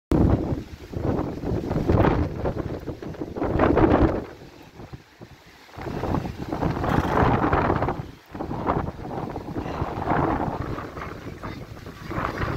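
Strong wind buffeting the microphone in gusts: a rough, low noise that swells and fades, with a lull about five seconds in and a brief drop near eight seconds.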